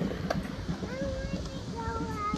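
Skateboard wheels rolling over smooth concrete, a steady low rumble with small irregular knocks. From about a second in, a voice makes two drawn-out vocal sounds over it.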